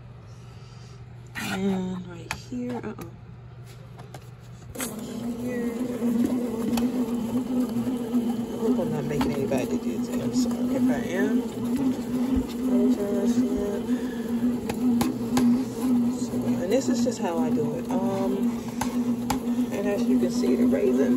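Pohl Schmitt bread machine's kneading motor running at its mixing stage, a steady hum with a slight waver as the paddle turns the dough. The hum falls away for the first few seconds and comes back about five seconds in.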